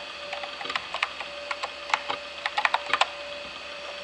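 Typing on a Macintosh computer keyboard: a few irregular clusters of sharp key clicks, over a faint steady tone.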